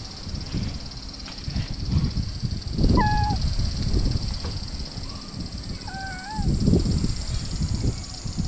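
A dozing calico stray cat answers the stroking with two short, soft meows. The first, about three seconds in, drops in pitch; the second, about six seconds in, wavers. Both are heard over low rumbling noise on the microphone.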